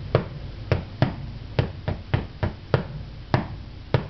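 Taiko sticks (bachi) striking a drum in a syncopated phrase: about ten sharp, dull-thudding strokes in uneven groupings.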